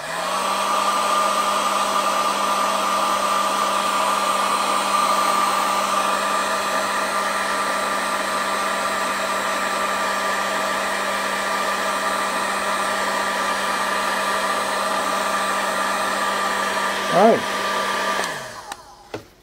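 Paint-stripper heat gun blowing hot air onto heat-shrink tubing, a steady fan whir with a constant hum. It starts abruptly at the beginning and shuts off and winds down just before the end.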